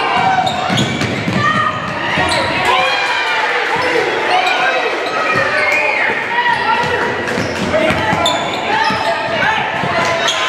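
Basketball game on a hardwood gym floor: the ball bouncing as it is dribbled, sneakers squeaking, and players and spectators calling out, in a large echoing hall.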